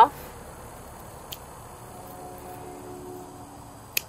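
Hand pruners snipping spent zinnia flower stems: a faint click about a second in and a sharper snip near the end, over low outdoor background with a faint steady hum in the middle.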